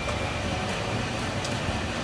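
Pork pieces frying in oil with onion, garlic and ginger in a frying pan, a steady sizzle with a faint thin whine held under it.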